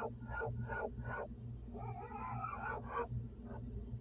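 Steady low hum of the Miller package air-conditioning unit running, heard at its floor supply grille, after its condenser fan motor replacement. Over the hum an animal gives a run of short sharp calls, two or three a second. A warbling call follows about two seconds in.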